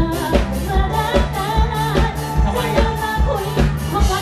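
Live band playing Thai luk thung pop with a steady kick-drum beat, about two and a half beats a second, under a woman singing into a microphone through the stage PA.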